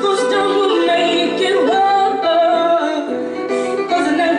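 Live band music: a woman sings a melody that holds and slides between notes, over electric guitars.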